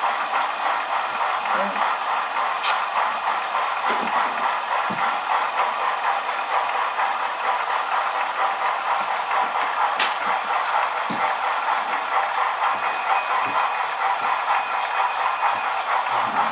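Sound-equipped HO scale model steam locomotive running slowly, a steady mechanical train sound with a few sharp clicks.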